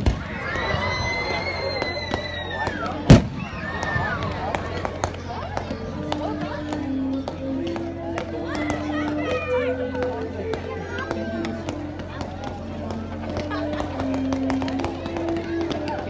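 Aerial firework shells bursting overhead: one loud boom about three seconds in and many smaller pops, over crowd voices. From about six seconds in, music with held melody notes plays along.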